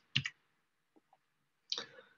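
A pause in a man's speech, recorded through a computer microphone: near silence broken by one brief sound just after the start and another near the end.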